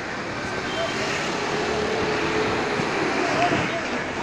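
Motorbike engine running with wind noise while riding slowly along a street, with scattered voices of people in the street.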